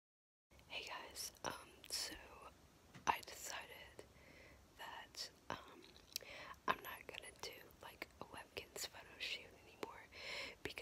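A person whispering in short phrases with brief pauses.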